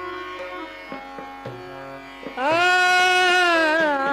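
Hindustani classical vocal music. A steady drone with a few light percussive strokes plays alone at first; about halfway through, a male voice comes in with a long, loud held note in raga Kukubh Bilawal.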